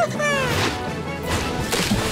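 Cartoon sound effects over background music: falling whistle-like glides as a dolphin dives, then a big water splash near the end.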